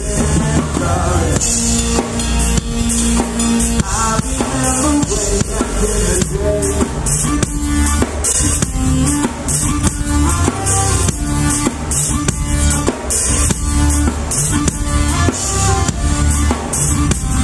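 Live band playing an instrumental passage with the drum kit up front: kick drum, snare and cymbals struck in a steady beat over sustained bass notes.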